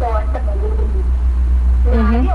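A person's voice talking briefly, over a loud, steady low hum.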